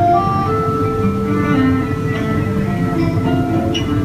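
Instrumental passage of a folk arrangement of an old whaling song, played by a small band of guitar, trumpet, cello and accordion, with long held notes between the sung verses. A steady background hum runs under it from the phone recording.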